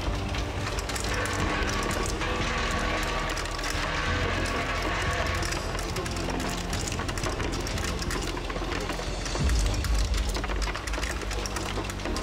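A cashew nut cutting machine running, a fast, even clatter from its spring-loaded blade heads and feed rollers as it splits nuts, with background music over it.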